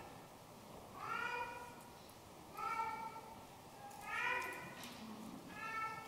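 A young child crying in short wails. Four cries come about a second and a half apart, each rising and then falling in pitch.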